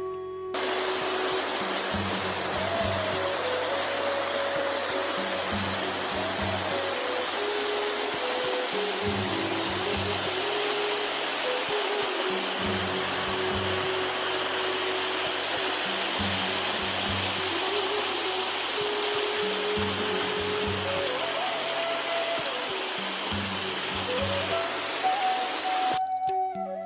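Rushing water of a small mountain stream cascading over rocks, starting abruptly about half a second in. Background music with a melody plays over it.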